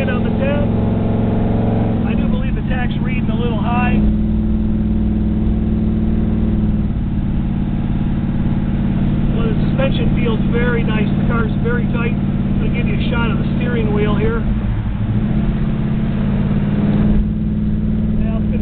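Built 454 big-block V8 of a 1970 Chevrolet Chevelle heard from inside the cabin under way, its note changing in steps around two and seven seconds in and dipping then climbing again near fifteen seconds, as the Turbo 400 automatic shifts.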